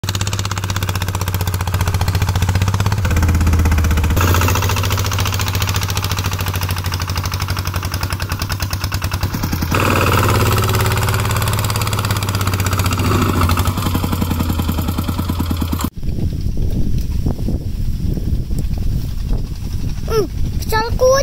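Single-cylinder diesel engine of a two-wheel walking tractor running steadily with a fast, even firing beat while it pulls a loaded trailer. About four seconds before the end the engine sound cuts off suddenly, and wind buffets the microphone.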